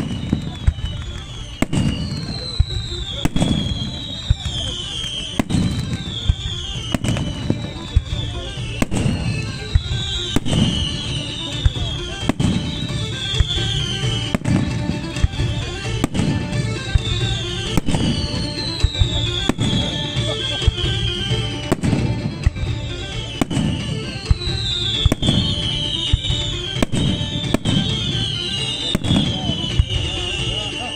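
Fireworks display set to music: a steady run of sharp bangs about once a second, with a high falling sound repeating every couple of seconds.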